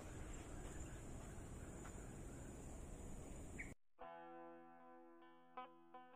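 Forest ambience of rustling and handling noise under a steady high-pitched insect drone. It cuts off abruptly a little under four seconds in, and soft plucked guitar music follows.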